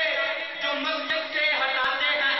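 Male voices chanting a devotional recitation, steady and continuous, with several voice lines overlapping.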